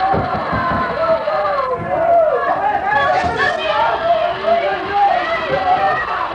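Many voices talking and shouting over one another: crowd chatter.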